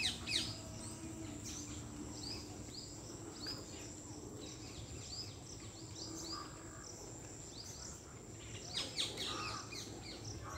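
Birds calling: one bird repeats a short chirp about twice a second, with denser bursts of calls near the start and again near the end.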